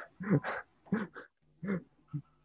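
A man laughing in a few short voiced bursts.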